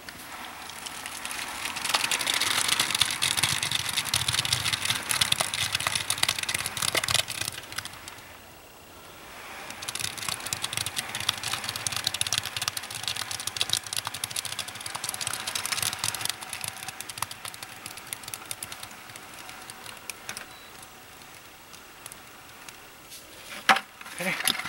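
Wet concrete mix sliding and pouring out of a tipped plastic bucket into a post hole: a gritty hiss packed with small clicks of gravel. It comes in two long pours with a short pause between and tapers off after the second.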